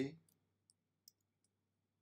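Three faint, brief computer mouse clicks, about a second apart in all, over a low steady hum.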